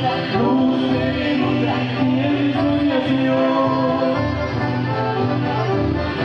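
Live chamamé band playing a dance tune: accordion carrying the melody over guitar and a steady pulsing bass.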